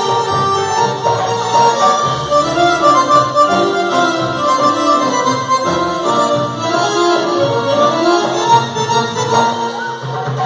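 Live Arabic belly-dance music: electronic keyboards play an ornamented, organ-like melody over a steady rhythm of hand drums and frame drums.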